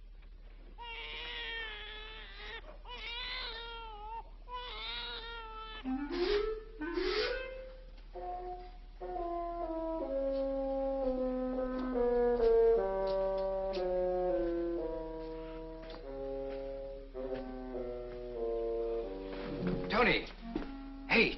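A newborn baby crying in three wavering wails, followed by two rising slides. From about halfway through, film-score music with held brass chords takes over.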